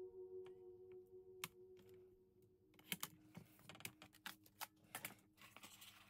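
Light clicks, taps and short rustles of cardstock and paper being handled and pressed around a box sleeve on a craft table. These come thick from about three seconds in, after faint background music fades out.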